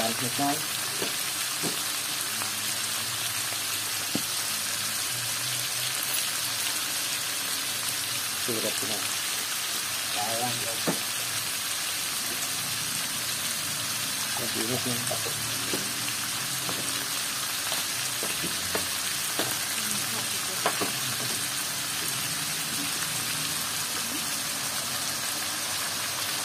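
Pork belly frying in an aluminium wok: a steady sizzle throughout, with a few light clicks.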